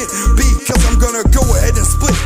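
Hip hop track: rapped vocals over a beat with heavy, deep bass notes that drop out briefly a few times.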